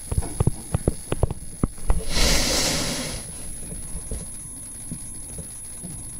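Stylus tapping and clicking on a touchscreen while handwriting on a slide: a quick run of sharp ticks in the first two seconds and a few fainter ones later. About two seconds in, a louder hiss-like rush of noise lasts about a second.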